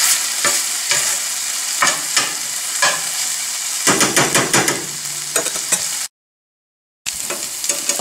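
Ginger-garlic paste, bay leaves and dried red chillies sizzling in butter and oil in a stainless steel sauté pan, frying off the raw taste of the garlic and ginger, while a metal slotted spatula scrapes and taps the pan as it stirs. The sound cuts out completely for about a second near the end, then resumes.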